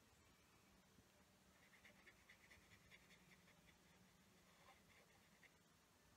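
Near silence: faint room tone, with a soft run of quick little ticks, about five or six a second, through the middle.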